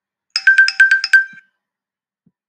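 A short electronic jingle: about seven rapid beeps, mostly on one high pitch, over about a second, then it stops.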